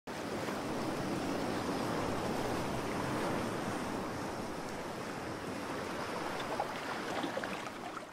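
Sea surf washing onto a sandy beach: a steady, even rush of waves that eases off slightly toward the end.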